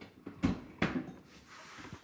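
Two sharp plastic knocks about a third of a second apart, then a brief rustle, as a small bottle is handled against the top of a plastic toy ant farm while water is tipped in.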